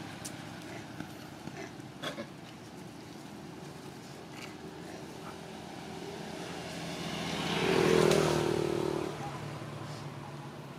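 A motor vehicle engine passing by out of sight: its sound swells about seven seconds in, peaks and fades away within two seconds, over a steady low background with a couple of faint clicks early on.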